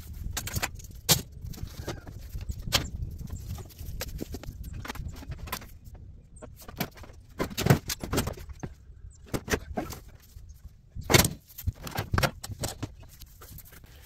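Scrap being shifted and pulled loose from a pile: irregular clinks, rattles and knocks of metal and wood, with a cluster of louder knocks about eight seconds in and another about eleven seconds in.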